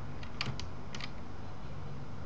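About five quick, sharp clicks from a computer keyboard and mouse within the first second, over a steady low hum.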